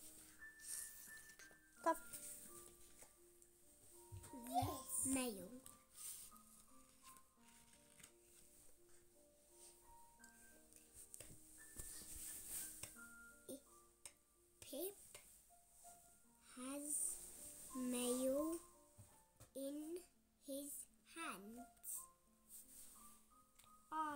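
Soft piano music playing slowly in the background, with a young child's voice speaking quietly now and then.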